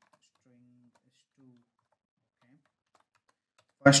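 Very faint computer keyboard typing, a few scattered keystrokes against near silence, with a faint low murmur of voice; clear speech begins near the end.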